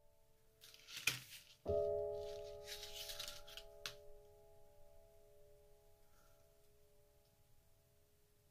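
A soft piano chord struck about two seconds in rings on and slowly fades. Before and just after it come brief dry rustles and a click from a flexible lattice of white PLA 3D-pen filament being handled and flexed.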